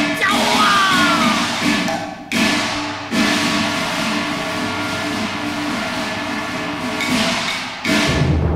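Cantonese opera instrumental ensemble playing a dense passage, punctuated by sharp percussion strikes about two and three seconds in. A heavy, deep percussion entry comes in at the very end.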